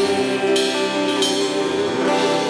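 Live church band playing an instrumental passage of a gospel song: drum kit with two cymbal strokes over sustained chords, with little or no singing.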